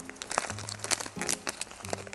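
Plastic candy wrapper crinkling in the hands as it is handled and opened, a run of quick, uneven crackles.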